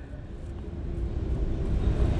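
Low rumble of a vehicle engine on the street, growing steadily louder as it approaches.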